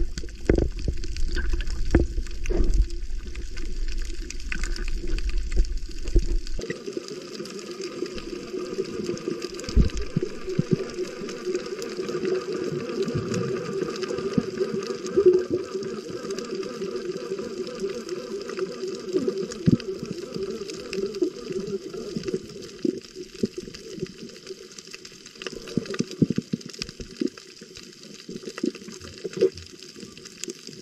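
Underwater sound picked up by an action camera in its waterproof case: water sloshing and knocking against the housing. About six seconds in it changes abruptly to a steady low hum with scattered clicks.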